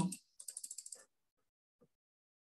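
A quick run of about ten computer keyboard key clicks, lasting about half a second, a little under half a second in.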